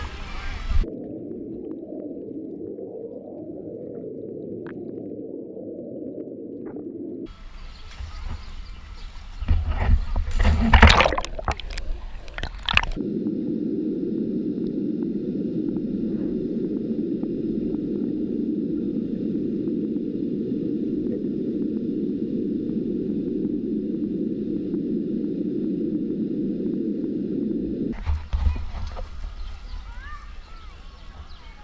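Muffled underwater sound of a swimming pool picked up by a submerged GoPro action camera: a low, steady water rumble with the higher sounds cut away. About ten seconds in the camera breaks the surface for a few seconds of loud splashing, then goes under again until just before the end.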